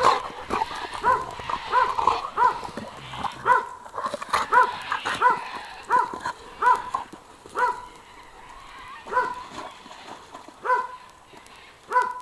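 A dog barking repeatedly in play: short, pitched barks about two a second, thinning out after about eight seconds.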